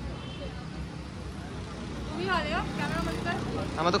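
Steady low rumble of road traffic, with a faint voice in the background about two seconds in and a voice starting to speak nearby right at the end.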